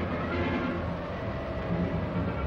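Steady rumble and clatter of armoured vehicles rolling on tracks along a paved road, heard on an old newsreel soundtrack.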